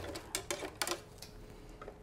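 Light clicks and ticks of aluminum wire being threaded through the holes of a steel foundation spike and a plastic flat, several in the first second and a half, then quieter.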